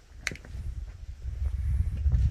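Low rumble of wind or handling noise on a phone microphone as it is carried around. There are a couple of sharp clicks about a quarter second in, and the rumble grows louder near the end.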